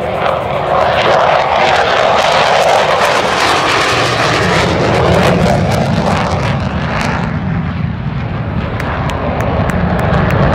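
A jet fighter making a low pass. Its engine roar builds over the first second, then deepens into a heavy low rumble about halfway through as it passes and climbs away.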